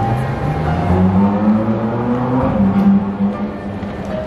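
Upright piano being played, low notes held under a rising run of notes about a second in.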